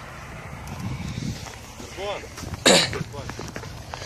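A man coughs once, short and sharp, a little past the middle, with faint voices in the background.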